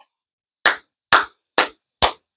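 One person clapping his hands in a steady beat, about two claps a second, starting just over half a second in.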